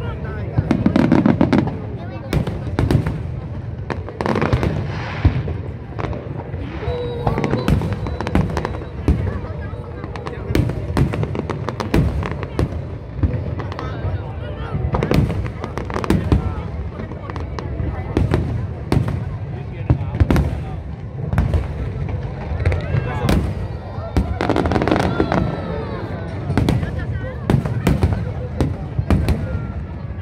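Aerial fireworks display: shells bursting one after another in quick, irregular succession throughout.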